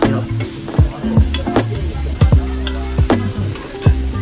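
Cabbage sizzling on a hot teppan griddle while metal spatulas scrape, chop and tap against the iron plate in quick, irregular strokes, with background music underneath.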